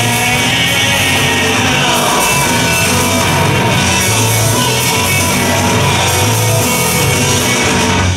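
Rock band playing live and loud: electric guitars, bass guitar and a drum kit.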